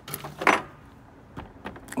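A fully loaded canvas tool bag of hand tools, about 30 pounds, being set down onto a refrigerant charging scale's platform. There is a loud burst about half a second in, then a few light clicks and rattles as the tools settle.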